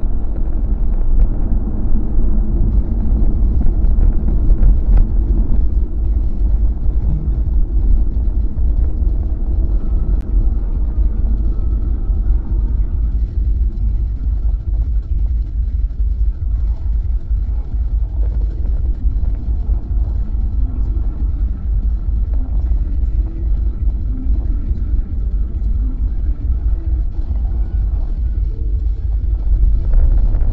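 Steady low rumble of road and engine noise inside a moving Kia Carens, picked up by a dashcam microphone, easing slightly after about six seconds.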